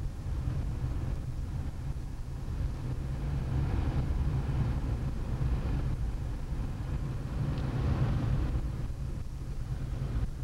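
Inside a moving car: a steady low engine and road rumble while driving slowly on snowy streets, with the tyre noise swelling a little now and then.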